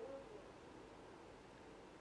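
Near silence: room tone, with a faint short hum right at the start.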